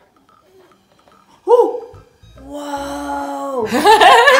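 Faint soft ticking while air is blown through a straw into a slime bubble. About a second and a half in, a woman's sudden loud exclamation falling in pitch, then a long held vocal tone and the start of excited talk near the end.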